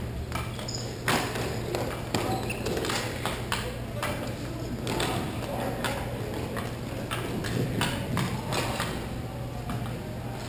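Ice hockey game sounds in a rink: irregular sharp clacks of sticks and puck, with indistinct voices, over a steady low hum.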